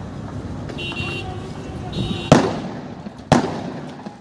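Two loud, sharp explosive bangs about a second apart in a street clash, each trailing off with a short echo. Brief shrill high tones come before them.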